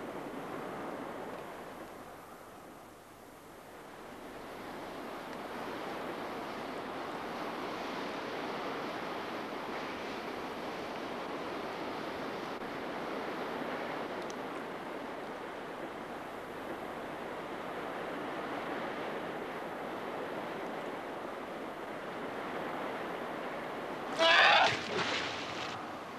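Sea surf washing steadily over a shallow shoreline. It eases off briefly a few seconds in, then swells back to a constant wash.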